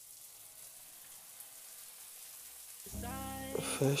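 Faint, even hiss of a shower spraying. About three seconds in, a song with a singing voice starts, much louder than the water.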